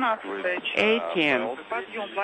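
Speech only: a voice talking over a radio link, reading out a crew schedule.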